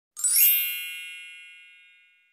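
Intro chime sound effect: a bright rising shimmer about a quarter second in, then a ringing chord of many high tones that fades away over the next second and a half.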